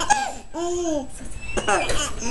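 A baby laughing, with a drawn-out playful voice that rises and falls about half a second in and a quick run of laughs near the end.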